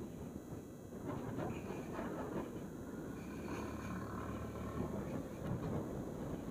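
Suzuki scooter being ridden: its small engine running under road and wind noise, with a steadier low hum from about three and a half to five seconds in.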